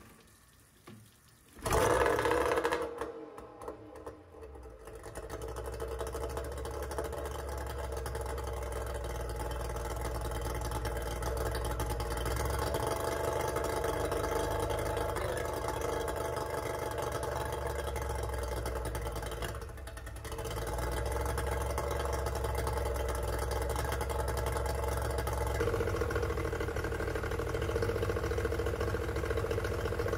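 Yamaha 30D three-cylinder two-stroke outboard started by hand: it catches about two seconds in, then runs steadily at a raised cold warm-up idle, the throttles set slightly cracked open. It stumbles briefly about two-thirds of the way through, then runs on.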